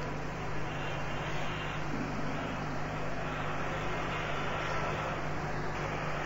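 Steady background noise of the lecture recording, an even hiss with a low steady hum underneath, with no distinct events.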